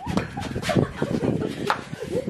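Several people laughing and shrieking, with a few sharp knocks or slaps among it.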